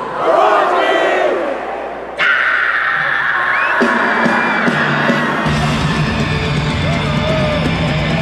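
Concert crowd yelling and cheering, then about two seconds in a heavy metal band starts a song with a sudden held chord. Deeper bass and drums join a few seconds later.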